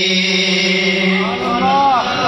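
A man's voice chanting a Pashto naat, holding one long steady note and then sliding through a few rising and falling melodic turns near the end.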